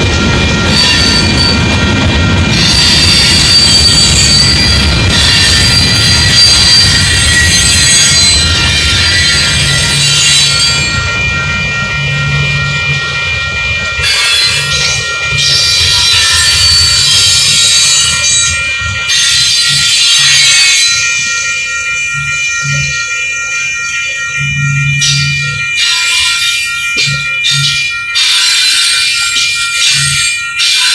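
Freight train cars rolling through a road crossing: a heavy low rumble, thinning out about a third of the way in, with steady high-pitched wheel squeal. In the last third the wheels clack sharply over the rail joints.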